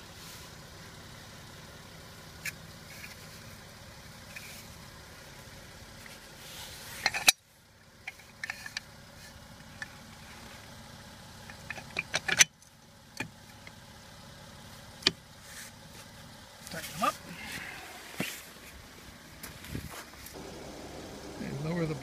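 Scattered metal clicks and knocks as the steel side supports of a Fisher home snowplow are fitted into their brackets, over a steady low hum of the Jeep Wrangler's engine idling.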